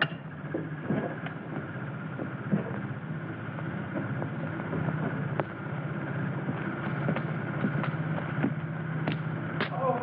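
A steady mechanical alarm tone, growing louder over the first few seconds and then holding, with the scattered clicks and crackle of an old optical film soundtrack.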